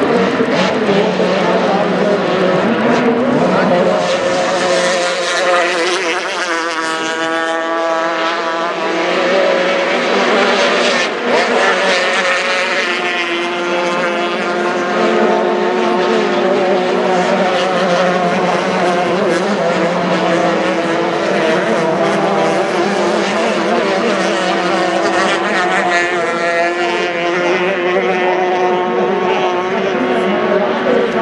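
Formula 350 racing powerboat engines running at high revs as the boats race past at speed, with spray hissing off the water. The engine pitch bends as boats pass by and as they throttle through the turns.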